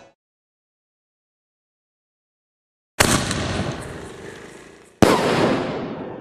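Two aerial firework shells bursting, the first about three seconds in and the second about two seconds later; each is a sharp bang that dies away over about two seconds.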